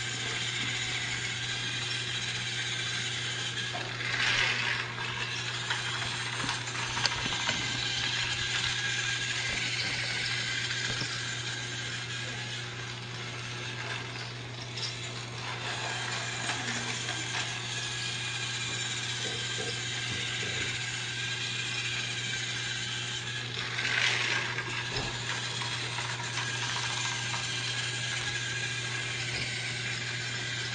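Motorized toy train's small motor and plastic gears running steadily with a fine clicking, with two brief louder rattles, one about four seconds in and one near the end.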